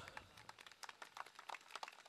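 Faint, scattered hand-clapping from a few people: irregular sharp claps, several a second.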